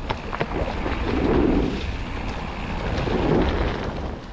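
Wind buffeting the microphone of a camera riding along on a mountain bike, over the hiss and rumble of the bike's tyres rolling on leaf-covered dirt trail, with a few sharp clicks near the start. The wind rush swells twice, about a second in and again about three seconds in.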